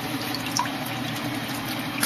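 Air-conditioner condensate water trickling steadily from the drain line into a plastic bucket holding water, with a low steady hum underneath.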